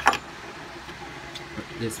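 A sharp click as a hand works a metal fidget spinner on a wooden desk, then the steady noise of an electric fan running at high speed.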